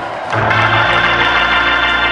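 Organ playing a sustained held chord. There is a brief dip at the start, then the chord comes in about a third of a second in and holds steady.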